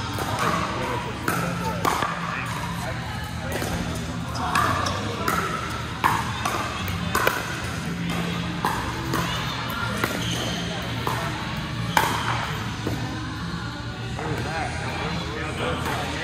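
Pickleball paddles striking a hard plastic ball in sharp, irregular pops during rallies, over background music and people talking.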